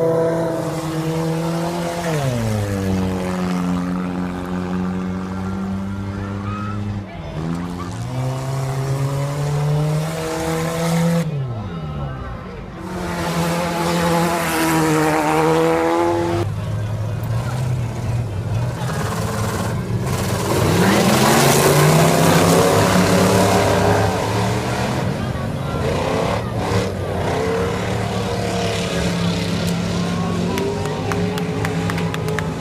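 Stock car engines racing around an oval track, their pitch dropping as they slow for the turns and climbing again as they accelerate out, lap after lap. The loudest stretch comes about two-thirds of the way through, as the pack runs past.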